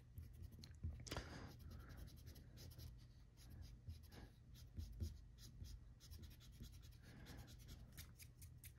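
Faint scratching of a graphite pencil on drawing paper: many short, quick strokes as hair is sketched in, a few slightly louder ones about a second in and about five seconds in.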